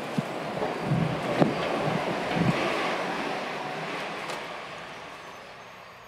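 City street traffic noise, with a few low thuds like footsteps in the first half. The noise swells and then fades away over the last few seconds.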